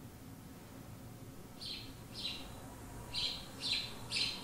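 Four short, high bird-like chirps, each dropping in pitch, coming in two pairs, the first about one and a half seconds in and the second about three seconds in. They are faint, and they come from the soundtrack of the video being screened.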